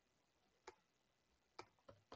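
Near silence with three faint, single computer keyboard keystrokes: one about a third of the way in and two close together near the end.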